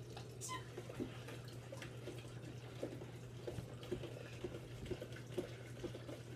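Faint puffing on a tobacco pipe: soft scattered smacks and pops of the lips at the stem, over a steady low hum.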